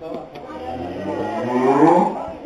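A beef cow mooing: one long low call that starts about half a second in, rises in pitch and grows louder, and is loudest near the end.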